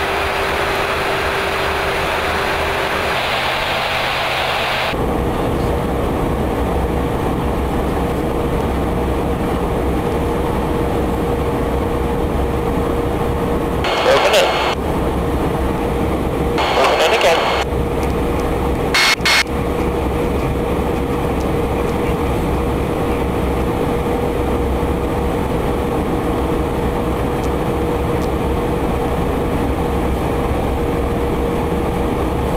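Steady noise of jet aircraft in flight heard from inside the aircraft, with a constant hum; the sound changes abruptly about five seconds in. Three brief bursts of radio chatter come in around the middle.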